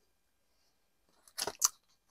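Near silence, then two brief crisp paper sounds about a second and a half in, as a posted envelope is handled and opened.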